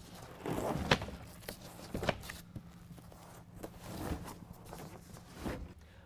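BedRug Impact foam bed liner being set down into a pickup's bed and shifted into place: about half a dozen soft thumps and scuffs, spread out, with light rustling between them.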